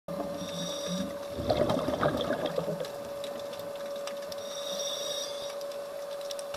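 Scuba diver breathing through a regulator underwater: a short hiss on the inhale, then a crackling burst of exhaled bubbles from about one and a half to nearly three seconds in, and another inhale hiss near the end. A steady whine runs underneath.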